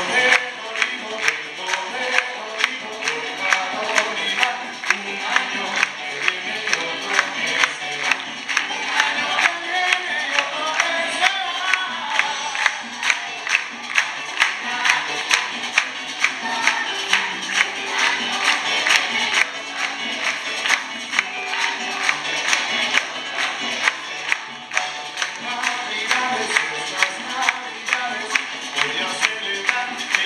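Youth symphony orchestra and choir performing a Christmas piece: bowed strings and singing voices over a steady percussion beat of sharp hits, about two a second.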